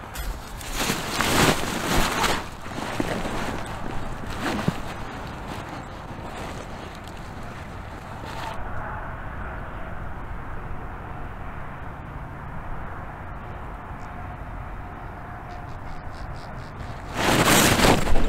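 Dry corn stalks rustling and crackling as they are handled over a layout blind, in uneven swells. About halfway through this gives way to a steady wind noise on the microphone, with a louder burst of noise near the end.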